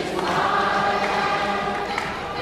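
A choir singing, holding long sustained notes.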